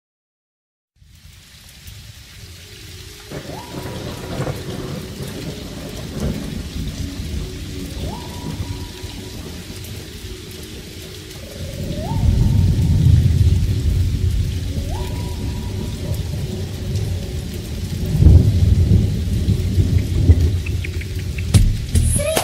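Rain and thunder used as the opening of a song: a steady hiss of rain fades in after a second of silence, with low rolls of thunder that grow louder about halfway and again near the end. A few short rising tones sound over it.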